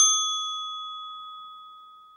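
A single bell-like chime ding, struck just before and ringing out clearly, fading away slowly over about two seconds.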